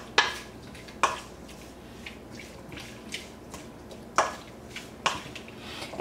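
A spoon clinking and scraping against a stainless steel mixing bowl as raw shrimp are tossed in dry seasoning: four sharp clinks, with quiet stirring of the shrimp between.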